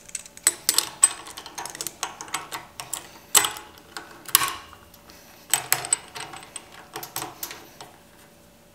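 Stainless steel tri-clamp end cap being seated on a butterfly valve's sanitary ferrule and the hinged clamp closed around it: irregular metal clicks, clinks and light scrapes, several ringing briefly.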